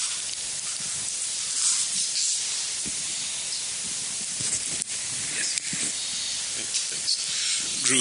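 A steady high hiss of background noise, with faint voices murmuring under it.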